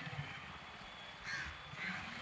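A crow cawing twice, about a second in and again near the end, faint against low street background noise.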